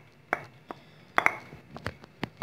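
Wooden spoon knocking and scraping against a bowl while melted chocolate is scraped out into whipped cream: about six short, sharp knocks at irregular spacing, two close pairs after about a second.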